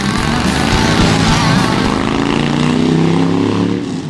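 Sport motorcycle engine revving high under acceleration, its pitch climbing over the first couple of seconds and then holding steady.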